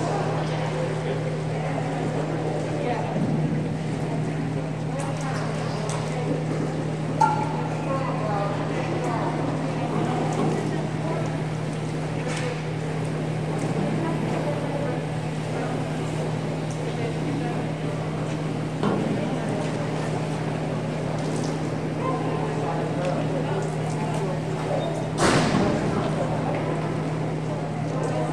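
Indoor pool hall ambience: a steady low hum under indistinct background voices and chatter, with a sharp knock near the end.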